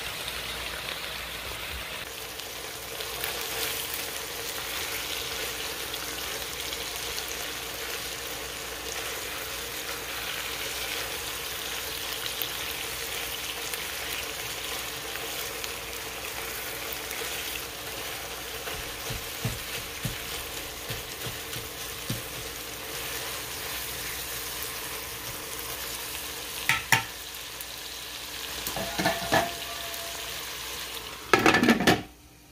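Ground beef, diced potatoes and carrots sizzling steadily in the nonstick pot of a multi-cooker on sauté mode, browning. Metal tongs click against the pot a few times as the meat is broken up, with a sharper clink near the end.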